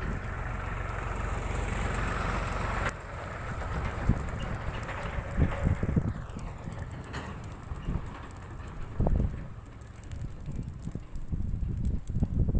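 Wind buffeting an outdoor microphone in low rumbling gusts over a steady background hiss, with an abrupt change in the background about three seconds in.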